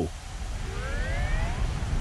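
Low, steady rumble of a cartoon train running on its track, with a faint rising tone about a second in.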